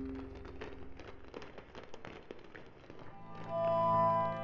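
Two low, steady singing-bowl tones die away in the first second, followed by a couple of seconds of scattered light taps. Then a new set of ringing tones, some high and some low, starts loudly about three and a half seconds in.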